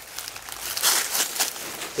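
Dry fallen leaves crinkling and rustling irregularly as they are disturbed, loudest about a second in.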